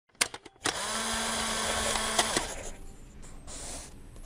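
A small electric motor whirs steadily for about two seconds with a low hum. It starts after a few clicks and stops with a click, and a fainter rush of noise follows near the end.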